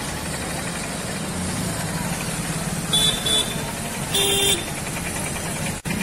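Busy roadside noise of traffic and a crowd's chatter. Two short vehicle horn toots come about three seconds in, and a longer horn blast follows just after four seconds.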